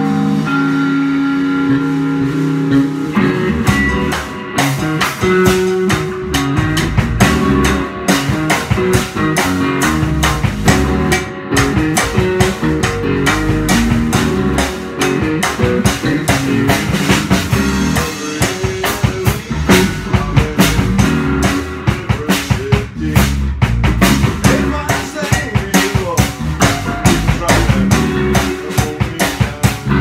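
Rock band rehearsing live: an electric guitar rings out a held chord, then drums come in about three seconds in and the band plays a driving rock groove with electric guitar and drum kit.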